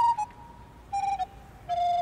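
Background music: a flute-like woodwind plays a short phrase of separate held notes that step downward in pitch.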